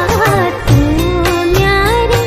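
A Kumaoni Pahari folk song: a voice holds and glides through a long sung line over a steady drum beat and bass.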